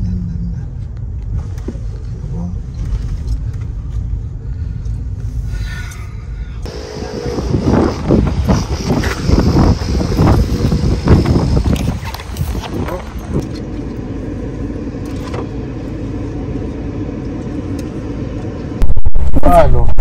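Low, steady rumble of a car driving slowly, heard from inside the cabin. About six seconds in it gives way to a busier stretch of knocks and handling noise that lasts several seconds, then settles to a steadier hum.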